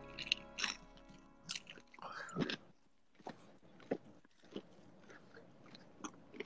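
Eating sounds from sauced Korean fried chicken: a scatter of short, irregular bites, smacks and chewing noises, with faint music underneath.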